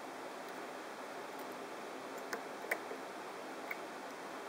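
A few faint ticks of a wire whip-finishing tool working tying thread around the head of a fly in the vise, over a steady hiss.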